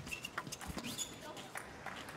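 Plastic table tennis ball being struck by bats and bouncing on the table in a doubles rally: a few sharp, irregular clicks in about the first second, then the rally stops.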